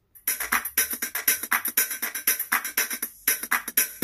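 Instrumental track with a fast, steady percussion beat played at full volume through a Leicke DJ Roxxx Ninja portable Bluetooth speaker, starting about a quarter-second in, with a brief break just after three seconds.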